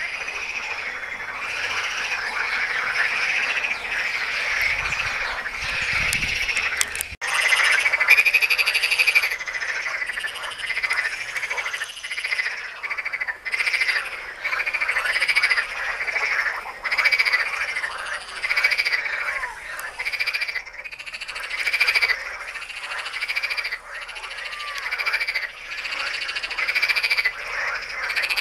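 A chorus of green water frogs croaking, many calling at once, the calls swelling and fading in waves about every second or two.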